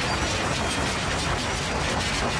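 Electroacoustic noise music: a dense, steady crackle of rapid clicks spread from deep low end to high hiss, like a ratcheting mechanism.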